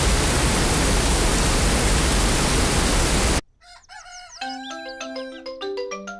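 Cartoon sound effect of heavy rain, a loud steady hiss, cutting off suddenly about three and a half seconds in. A short light tune of stepped notes with a few chirpy glides follows.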